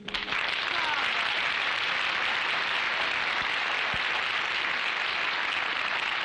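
Audience applauding steadily, starting sharply as a piano song ends.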